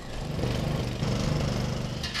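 A handheld power tool's motor running steadily with an even low hum, used by workmen to cut apart a collapsed metal frame.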